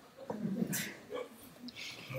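Faint, scattered laughter in short bits following a joke.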